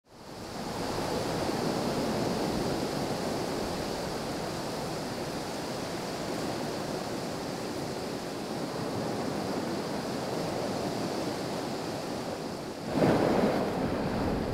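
Sea waves and wind, a steady rushing that fades in over the first second. Near the end it becomes louder and fuller.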